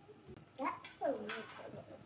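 A young girl's wordless vocal sounds: a short rising call about half a second in, then a longer, high call about a second in that falls in pitch.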